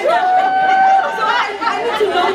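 Several people talking over one another, with one voice holding a drawn-out, high-pitched exclamation for nearly a second early on.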